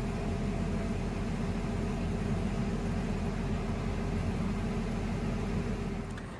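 Harvest machine running steadily, heard from inside its cab, while the unloading auger pours shelled corn into a grain trailer.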